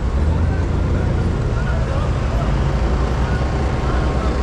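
Asphalt paver's diesel engine running steadily while laying asphalt, a constant low sound.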